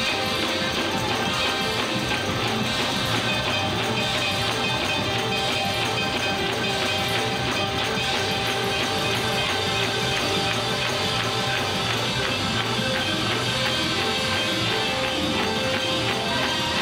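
Live church band playing gospel music, with drum kit, electric bass guitar, organ and horns, steady throughout.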